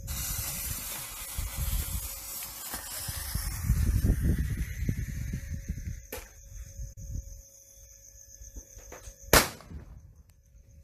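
A lit firework fuse hissing and spitting, the hiss fading over a few seconds, over a low rumble. Near the end comes one sharp bang as the firework goes off.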